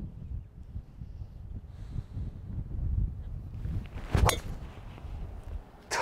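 A golf tee shot: one sharp crack of the clubhead striking the ball about four seconds in, over a steady low rumble of wind on the microphone.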